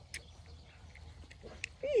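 A sheep bleats near the end, one call that falls in pitch, after a quiet stretch of handling with two faint clicks.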